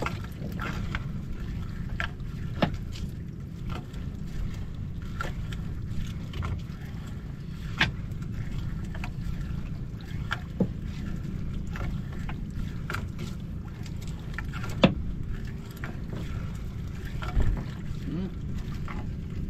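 Gill net being hauled hand over hand into a wooden outrigger boat: irregular knocks and clacks every few seconds as the net and its weights strike the hull, over a steady low rumble.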